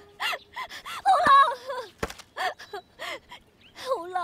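A woman sobbing: short gasping breaths broken by wavering crying cries, the loudest cry about a second in.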